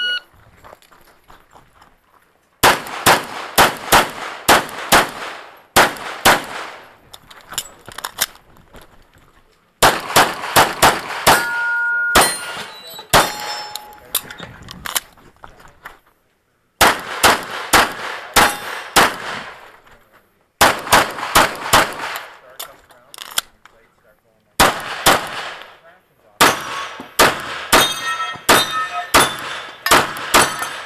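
A shot timer beeps to start, then a SIG P226 pistol fires in several rapid strings of shots with pauses between them, as in a timed practical-shooting stage. Steel targets ring out when hit.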